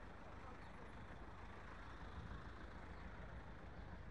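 Street ambience with a steady low rumble of traffic.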